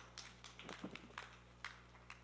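Faint, irregular clicks and taps, about eight in two seconds, over a steady low electrical hum.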